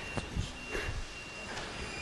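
Quiet room tone during a pause: a low hiss with a faint steady high-pitched whine and a few soft ticks.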